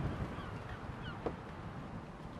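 Outdoor background with faint bird calls: scattered short high chirps and one brief lower call a little over a second in.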